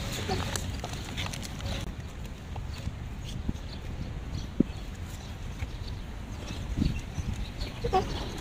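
A short laugh at the start, then outdoor background with a steady low rumble and a few scattered light clicks and knocks.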